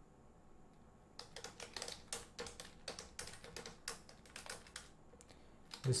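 Computer keyboard typing: a quick run of key clicks starting about a second in, in bursts with short pauses.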